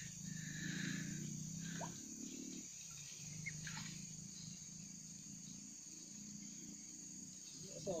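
Faint, steady insect chorus, with a few brief chirps.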